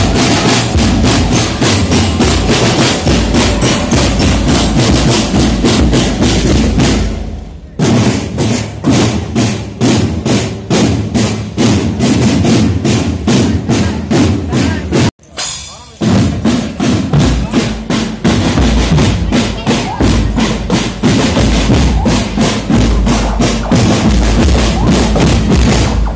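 Marching drum band of many drums beaten with sticks, playing a fast, steady rhythm. The drumming dips briefly about seven and a half seconds in and breaks off abruptly about fifteen seconds in before starting again.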